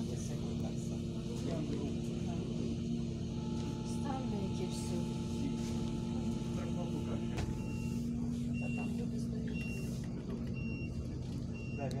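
City bus's diesel engine idling at a standstill, a steady low hum heard from inside the cabin. From about two-thirds of the way in, a short high electronic beep repeats about once a second.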